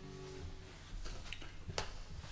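Acoustic guitar sounding softly at the start and fading out within about a second, followed by a few faint clicks.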